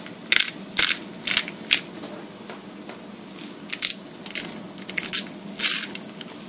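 Salt and pepper mills being twisted over a skillet of shredded cabbage, giving a series of short, gritty grinding bursts as the vegetables are seasoned.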